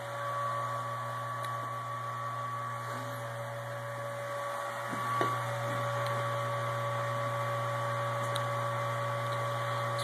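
Small electric brewing pump running steadily with an even hum, recirculating hot wort through a plate chiller.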